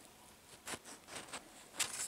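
A sheet of printing paper being peeled off a freshly inked lino block: a few faint, short crackles as it comes away.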